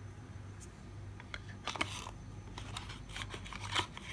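Light clicks and rustles of a glass nail polish bottle being handled and set down on a stamping mat, in a few quick clusters over a faint steady hum.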